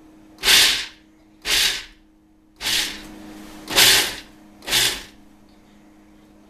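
Food processor pulsed five times in short bursts about a second apart, its blade chopping whole peanuts into crumbs.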